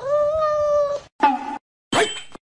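Cat meowing: one long, level meow lasting about a second, then two shorter meows.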